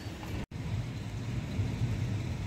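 Steady, low rumbling noise of a rainstorm with wind. The sound drops out completely for an instant about half a second in.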